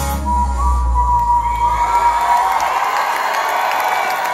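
A rock band's final chord rings out and dies away over about three seconds, with one high note held, while the concert crowd cheers and claps, getting louder as the music fades.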